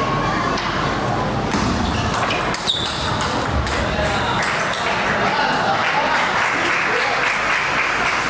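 Table tennis rally: the plastic ball struck back and forth by the bats and bouncing on the table, a string of quick, sharp hits.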